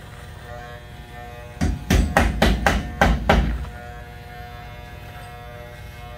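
Corded electric trimmer humming steadily as it trims a mustache. A quick run of about seven knocks, the loudest sound, comes between roughly one and a half and three and a half seconds in.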